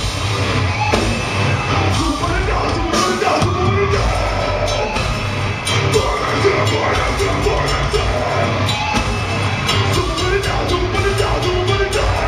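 Live deathcore band playing at full volume: heavy drums and down-tuned distorted guitars under a vocalist's harsh, yelled vocals, heard from within the crowd.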